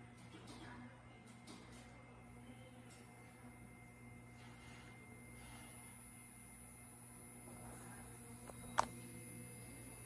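Faint steady hum and room tone, with one short sharp click about nine seconds in.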